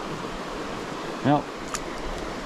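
Small mountain creek flowing, a steady rush of shallow water running around the legs of someone wading in it.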